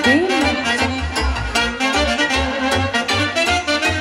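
Live Romanian folk band playing an instrumental introduction: saxophone, trumpet and accordion over keyboard and a steady bass-drum beat. A wind instrument swoops up and back down in pitch at the very start.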